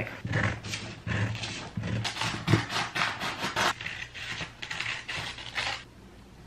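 Brown kraft paper rustling and crinkling as it is handled and spread out on a table, in a quick, irregular run of noisy strokes that stops abruptly near the end.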